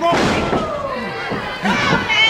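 A sudden thud on the wrestling ring right at the start, followed by shouting voices from the ring and crowd.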